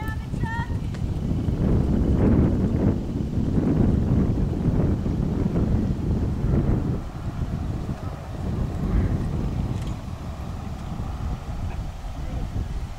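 Wind buffeting the microphone, a steady low rumble that eases slightly in the second half. There are a few short chirps right at the start.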